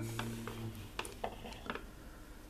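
A few faint, scattered clicks and taps, with a low steady hum that stops under a second in.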